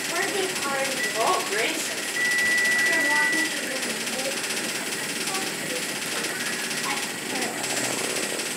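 An electronic beep: short high pips, then one steady high tone a little over a second long, over scattered voices in the room.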